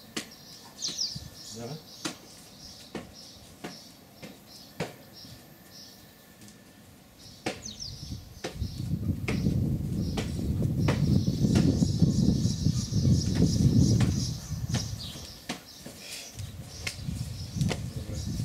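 A few short bird chirps and scattered light knocks. About halfway, a loud, low rumbling noise comes in and lasts several seconds, then dies away near the end.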